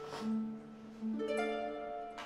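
Background film score of plucked string notes, with new notes coming in twice and ringing on.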